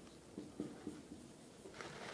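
Dry-erase marker writing on a whiteboard: a few faint, short strokes of the felt tip.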